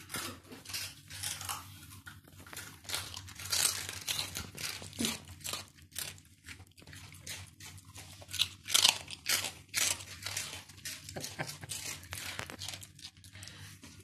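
Small dogs chewing crisp pork crackling: many irregular crunches.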